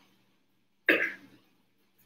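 A woman coughs once, briefly, as if clearing her throat, about a second in.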